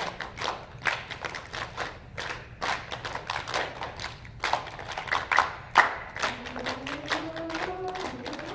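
A choir's body percussion: quick, uneven runs of hand claps and slaps on chest and thighs. Voices come back in about six seconds in.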